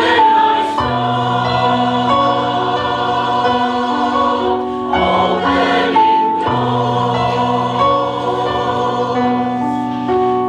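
A mixed choir of men's and women's voices singing in harmony, holding long chords that change every few seconds.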